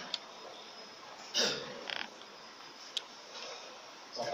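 A quiet meeting room with a low steady background. It is broken by a few sharp clicks and one brief, louder rasping sound about a second and a half in, followed by a smaller one just after.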